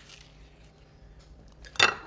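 A slice of pizza being pulled off the pie with faint, soft handling sounds, then one short, sharp knock near the end as it is set down on a ceramic plate.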